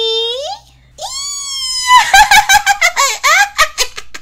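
A voice actor's high-pitched cartoon-character laugh: a drawn-out held squeal, then from about halfway through a fast run of giggles.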